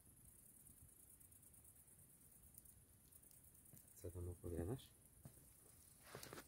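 Near silence, broken by a short burst of quiet speech about four seconds in.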